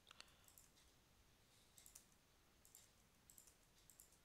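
Faint, scattered computer keyboard keystrokes, a few irregular clicks over near silence.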